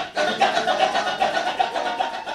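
Kecak chorus of many men chanting fast, interlocking rhythmic syllables over a steady sung note.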